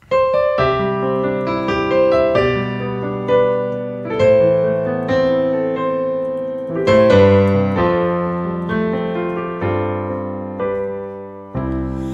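Digital keyboard played with a piano sound: the accompaniment intro of a slow pop ballad, struck chords in the right hand over deep left-hand bass notes. It starts suddenly.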